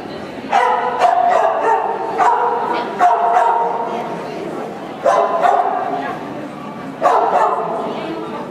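A dog barking in loud, high yelping barks, about six of them spread a second or two apart.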